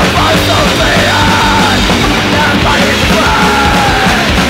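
Raw hardcore punk song played loud, a dense wall of distorted band sound with yelled vocals over it.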